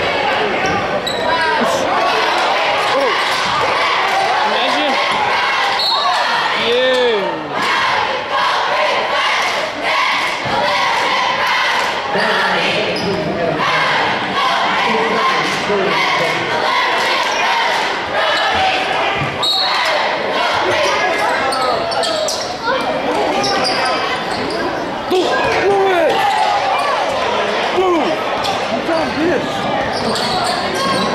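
Basketball game sounds in a large echoing gymnasium: a ball bouncing on the hardwood court, sneakers squeaking, and players and spectators calling out. It runs on without a break.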